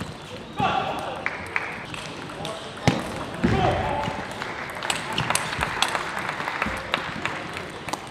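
A table tennis ball struck by paddles and bouncing on the table during a rally: a run of sharp, irregular clicks in a reverberant hall. Voices are heard in short stretches about half a second in and again around three and a half seconds.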